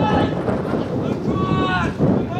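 A long drawn-out shout, held for about half a second near the end, with a shorter call at the start, over wind rumble on the microphone.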